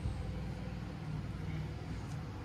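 A vehicle engine running with a steady low hum.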